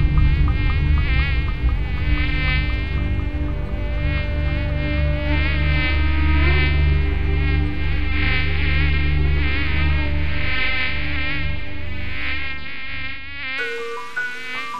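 Mosquito buzzing sound effect: a high insect whine that wavers up and down in pitch as if flying about, over a deep steady low drone. Both cut off abruptly just before the end.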